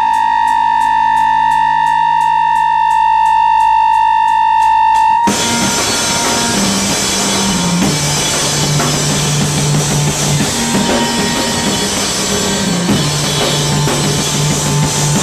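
Live two-piece punk band playing drum kit and electric keyboard. For about five seconds a keyboard holds one high note over steady ticking, about three a second. Then the full drum kit crashes in and a low keyboard bass line steps back and forth between two notes.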